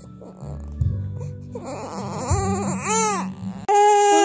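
Baby crying in pain from a sore thigh after an injection. A few short wails rise and fall, then break into a loud, sustained cry near the end.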